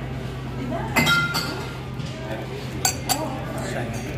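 A stemmed wine glass clinks once with a short, clear ring about a second in, then gives two quick, sharper clinks close together near the end.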